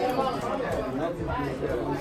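Indistinct chatter: several voices talking at once in a classroom, with no single voice clear and no other sound standing out.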